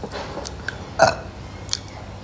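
A woman burps once, a short throaty sound about a second in.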